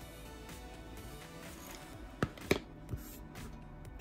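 Soft background music, with two sharp clicks close together about halfway through and a softer third just after: pinking shears snipping the edge of a tulle bow.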